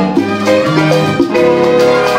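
Live salsa band playing, with long held notes over the rhythm.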